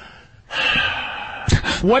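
A man's long, breathy sigh into the microphone, about a second long, starting half a second in and followed by the start of speech near the end.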